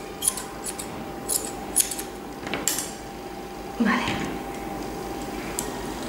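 Long grooming scissors snipping through a West Highland terrier's coat between the ears: about five crisp snips in the first three seconds. A short voice sound comes about four seconds in.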